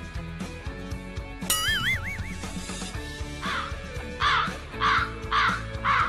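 Crow-caw sound effect, a run of about five loud caws starting around halfway, laid over background music with guitar. A short warbling tone, wavering up and down in pitch, sounds about a second and a half in.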